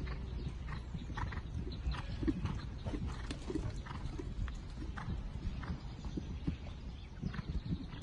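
Holsteiner show-jumping horse cantering on grass, its hoofbeats coming as a run of soft, dull strikes about two a second.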